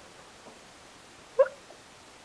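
A toddler's single short, high-pitched vocal squeak about one and a half seconds in, over quiet room tone.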